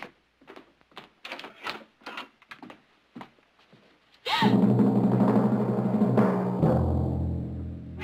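Footsteps on a wooden floor, a few steps a second, then about four seconds in a sudden loud dramatic orchestral music sting with timpani that holds on.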